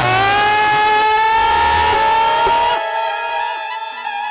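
A singer's voice holding one long note in a live devotional bhajan, sliding slightly upward and then held steady over a sustained accompaniment chord. The voice stops a little before the end, leaving the quieter held chord.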